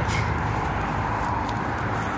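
Steady noise of road traffic passing close by, with a few faint clicks.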